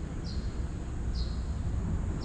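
Outdoor ambience with a steady low rumble. A bird gives three short, high chirps, about a second apart.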